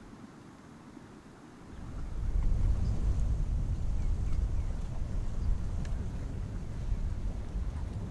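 Low, gusting rumble of wind buffeting an outdoor microphone, swelling in about two seconds in and staying loud.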